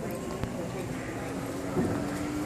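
Footsteps on a hard terminal floor over a background murmur of distant voices, with one sharp click about half a second in.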